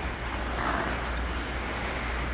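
Ice skate blades gliding on rink ice, with a swell of blade hiss about half a second in, over a steady low hum.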